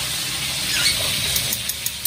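Catfish frying in hot oil in a wok, a steady sizzle with a few sharp crackles in the second half.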